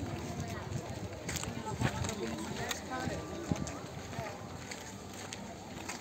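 Indistinct voices of people talking nearby, with a few sharp clicks or knocks through the first half.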